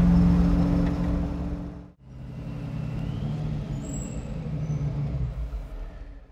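Supercharged V8 of the Ringbrothers 1966 Chevrolet Chevelle Recoil running steadily under way for about two seconds, then cut off suddenly. The engine is then heard again, more quietly at low speed, fading near the end.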